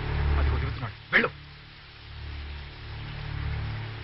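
Low, steady film background score with a drone underneath, and one short, sharp cry about a second in.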